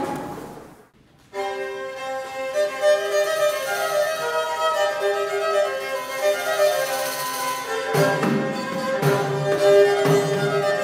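A piece by a medieval-music ensemble starts about a second in, after a short pause, with a melody in held notes on a bowed string instrument. Lower parts fill in near the end.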